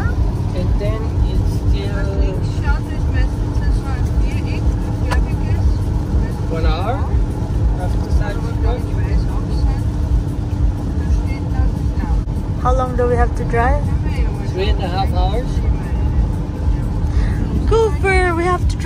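Steady in-cabin road noise of a BMW driving on a wet motorway: a low rumble of tyres and engine with a constant hum underneath.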